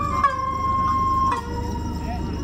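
Japanese transverse bamboo flute (shinobue) playing shishimai festival music: long held high notes that step down in pitch twice.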